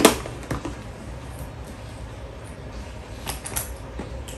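Light knocks and clicks of a small cardboard box and other small items being handled in a plastic basket: a sharp knock right at the start, another about half a second in, and a few faint ticks a little after three seconds.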